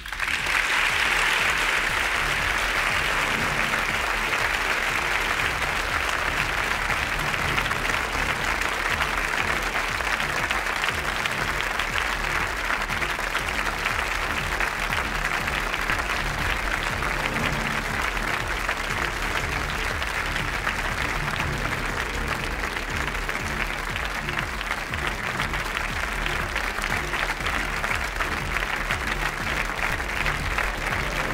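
Studio audience applauding steadily from the very start, with music playing underneath.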